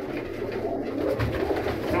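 Domestic pigeons cooing in a small loft, a low murmuring with no single call standing out.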